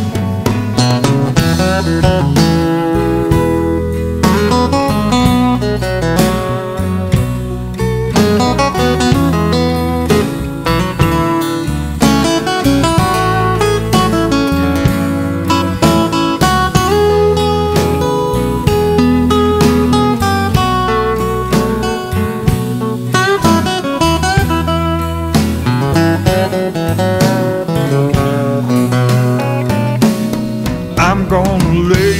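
A blues band playing live, an instrumental break: acoustic guitar over electric bass and drums, keeping a steady beat.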